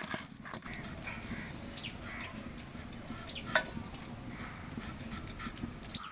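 Slit eggplants being turned and rubbed with spices by hand in a steel bowl, giving soft rustles and light knocks, over a steady low background noise with a few short high calls.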